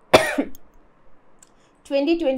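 A woman coughs once, a single short cough about a tenth of a second in.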